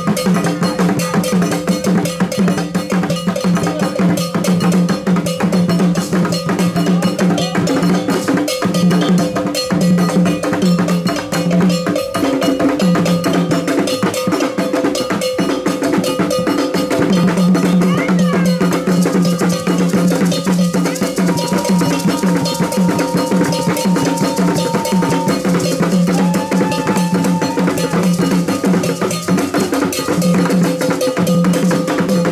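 Ghanaian drum ensemble playing a fast, steady rhythm, with a metal bell struck over and over on top of the drums. A few short, high, held notes sound past the middle.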